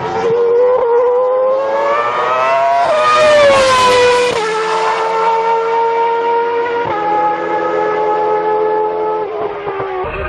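A racing car engine revving, its note climbing for the first few seconds, then dropping sharply about four seconds in and holding fairly steady, with further sudden drops in pitch about seven seconds in and near the end.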